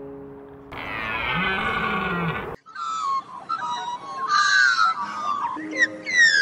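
A deer's long, high, wavering bleat lasting about two seconds, followed by a stretch of short chirping, whistling calls.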